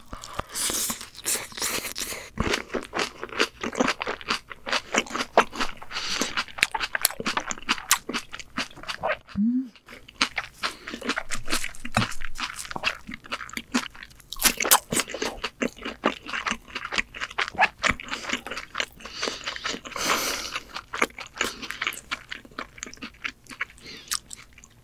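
Close-miked crunchy chewing of a mouthful of shredded cabbage salad: many quick, crisp crunches, broken by a short pause about nine and a half seconds in.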